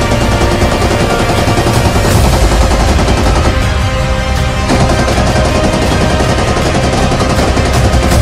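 A machine gun firing rapidly and without let-up, with soundtrack music laid over it.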